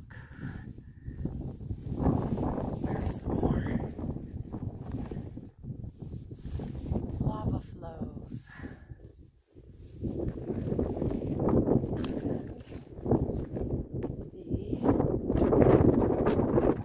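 Footsteps scuffing and crunching over rough lava rock, in an irregular run of footfalls with a short quiet pause about nine and a half seconds in.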